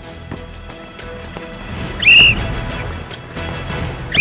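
A referee's whistle blown in one short shrill blast about halfway through, calling a foul on a player, over background music.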